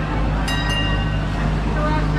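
Engine of a vintage-style double-decker motor omnibus running as it rolls slowly close alongside, a steady low hum. About half a second in, two sharp metallic ringing strikes sound in quick succession.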